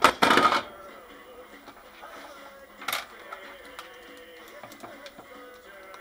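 A handheld battery load tester with clamp leads clatters as it is set down on a workbench at the start, with a single sharp click about three seconds in. Faint background music runs underneath.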